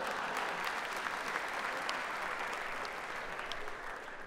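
Live theatre audience applauding, a steady dense clatter of many hands clapping that dies down at the end.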